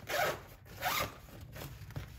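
Zipper on a fabric packing cube being pulled in two short strokes, about three-quarters of a second apart.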